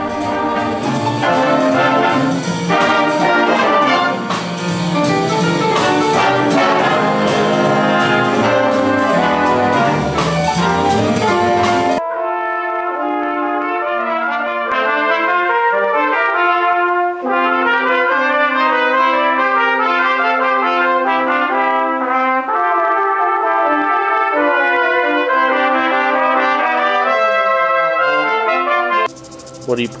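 Big band brass and saxophone section playing loudly together, then, after a sudden cut about twelve seconds in, a small brass ensemble of French horn, low brass and trombone playing with clearer separate lines and a long held low note.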